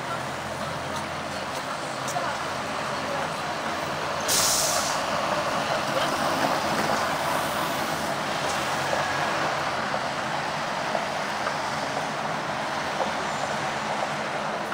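Steady city-street traffic from buses and cars running past, with a short, loud hiss of a bus's air brakes about four seconds in.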